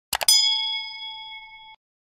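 Animated subscribe-button sound effect: a quick double click, then a bright bell-like notification ding. The ding rings on, fading, for about a second and a half, then cuts off sharply.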